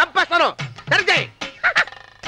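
A person's voice making a run of about five short, high yelping cries without words, each rising and falling sharply in pitch.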